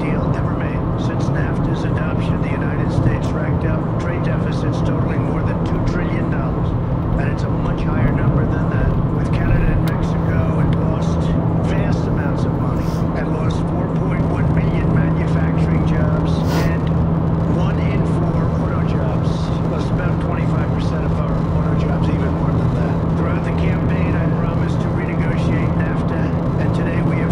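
Steady engine and tyre drone inside a car cabin while driving at road speed, with a constant low hum.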